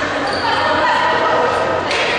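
Futsal game sound in a reverberant sports hall: several players and spectators calling out over one another, with the ball and shoes knocking on the wooden court.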